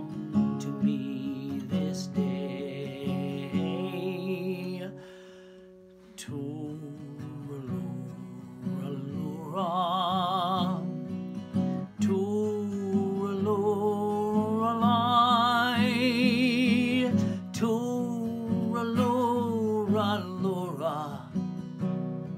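A man singing a slow Irish lullaby, accompanying himself on a strummed acoustic guitar. He holds long notes with a wavering vibrato. About five seconds in, the guitar chord rings out and fades before the next strum.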